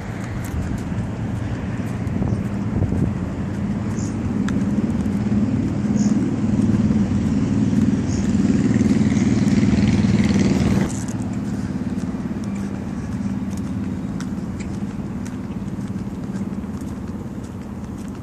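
Road traffic noise that builds to its loudest about ten seconds in, then drops suddenly to a lower steady level.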